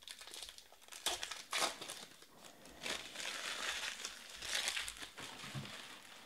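Foil wrapper of a Panini Prizm Draft football card pack crinkling as it is handled, in irregular bursts: a loud flurry about a second in and a longer spell from about three to five seconds.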